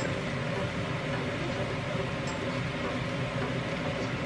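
Kitchen cooker-hood extractor fan running steadily.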